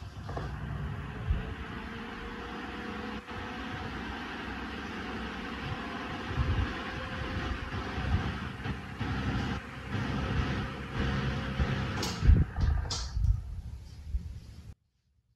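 Electric desk fan running: the rush of air from the spinning blades, with a motor hum that rises in pitch over the first couple of seconds as it comes up to speed and then holds steady. About twelve seconds in the hum stops, and a couple of sharp clicks follow, as the fan is switched off and its blades start to coast down.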